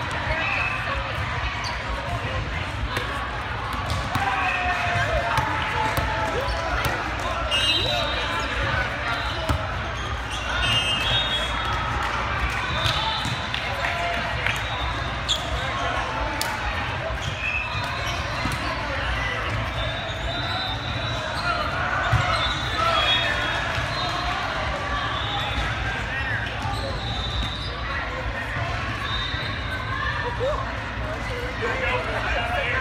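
Echoing din of a large hall during a volleyball tournament: many voices chattering at once over a steady low hum, with balls thumping on the courts and sharp hits now and then. A few brief high-pitched squeaks cut through.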